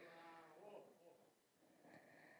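Near silence: room tone, with a faint, brief pitched sound in the first second.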